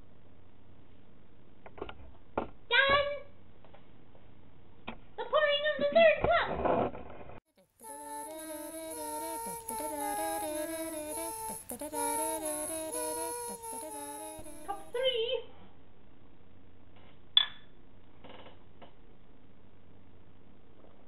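Short wordless vocal sounds, then after a sudden cut about seven seconds of a tune with evenly stepping notes, then another brief vocal sound and a single sharp click.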